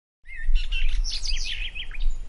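Songbirds chirping: a quick run of short gliding notes lasting about a second and a half after a moment of silence, over a steady low rumble of outdoor background noise.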